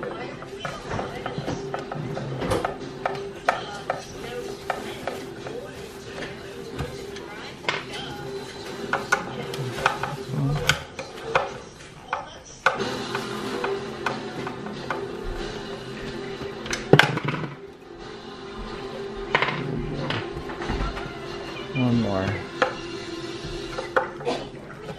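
A screwdriver backing the screws out of a Toyota Highlander side mirror's adjustment-motor assembly: irregular clicks, taps and scrapes of metal tool on screws and plastic, with a few sharper knocks. The loudest knock comes about 17 seconds in.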